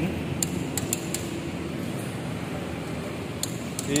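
Steady low background hum with a few faint light clicks.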